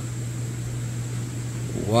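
Steady low mechanical hum with a thin high-pitched whine above it: equipment running in an aquarium fish room.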